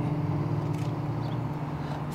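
Steel-string acoustic guitar chord left ringing, its held notes slowly fading, between sung lines.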